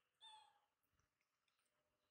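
Infant macaque giving one short, high-pitched coo about half a second long, dipping slightly in pitch, just after the start.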